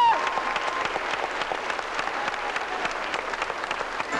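Audience applauding steadily, starting as the choir's held final chord breaks off.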